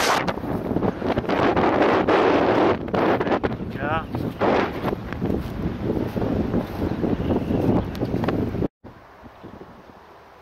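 Wind buffeting the camera's microphone in loud, uneven gusts, with a brief wavering tone about four seconds in. The noise cuts off suddenly near the end, leaving a much quieter outdoor background.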